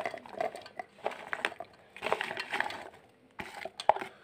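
Chopped dry coconut pieces tumbling and clattering into a stainless-steel mixer-grinder jar as they are tipped and pushed in from a plastic bowl: irregular light clicks and rustling in a few short spells, with a couple of sharper clicks near the end.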